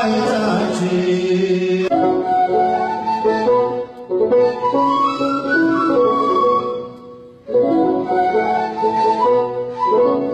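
A male voice holds a sung hymn note for about two seconds, then an Ethiopian end-blown washint flute takes up the melody in short phrases, with brief breaks about four seconds in and again near seven seconds.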